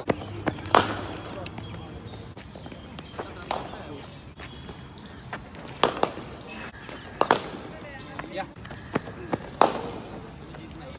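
Cricket ball hitting the bat and the pitch: sharp wooden cracks about every two to three seconds, some in close pairs, with voices chattering in the background.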